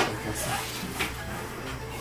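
Light knocks and rustling of household objects being handled and moved about, with a sharper knock at the start and a smaller one about a second in, over a steady low hum.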